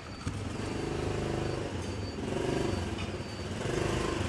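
A motor vehicle engine running steadily, its low hum swelling slightly a little past the middle.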